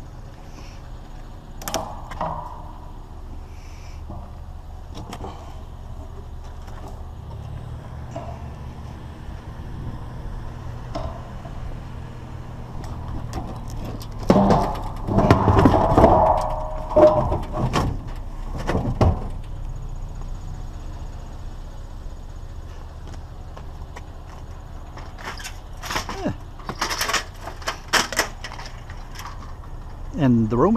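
A metal satellite dish being loaded into a pickup truck bed, clanking and rattling against the scrap already in it for a few seconds midway. A few lighter knocks and clatter follow near the end, over a steady low hum.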